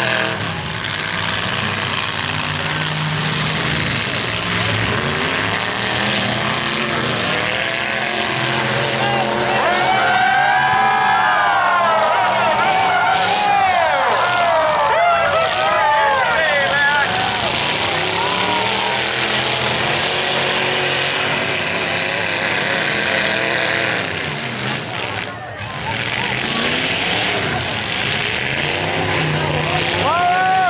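Demolition derby truck engines revving, their pitch climbing and falling again and again through the middle stretch over a constant wash of engine and crowd noise.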